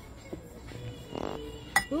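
A serving spoon scooping rice from a bowl, with a light tap early on and one sharp clink against the dish near the end.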